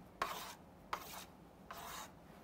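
Chalk drawing lines on a chalkboard: three faint, short strokes, about a second apart.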